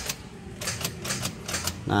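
Honda CR-V starter solenoid clicking in two quick runs of clicks while the engine does not crank: typical of a faulty starter solenoid that is not connecting to turn the starter motor.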